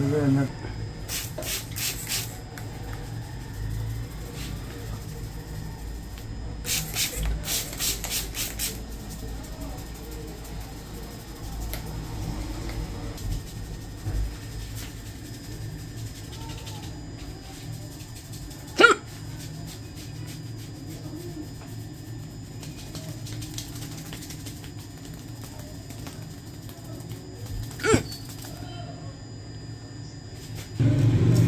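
A barber's hand rubbing a man's freshly clipped, stubbly scalp over a steady low hum. There are two short runs of rapid crisp sounds, about a second in and again around seven seconds, and two single sharp clicks later on.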